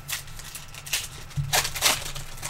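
Trading cards and a card-pack wrapper being handled, giving a few short crinkling rustles and slides. The loudest comes near the end.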